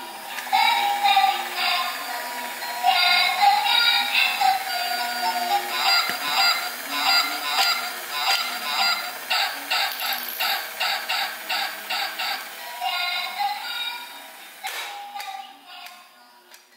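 Battery-powered walking, egg-laying toy swan playing its electronic sound-chip tune. A tinny melody turns into quick, evenly repeated notes about six seconds in, then fades out near the end.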